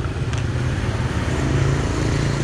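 A motorbike engine running as it passes on the street, getting a little louder in the second half.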